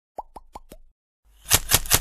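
Intro logo sound effects: four quick plops, each dropping in pitch, then after a short gap a rapid run of sharp crackling clicks.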